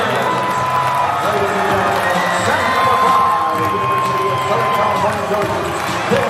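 Arena crowd cheering and shouting in celebration, with voices throughout. A long steady high note sounds over the noise twice, first at the start and again in the middle for about two and a half seconds.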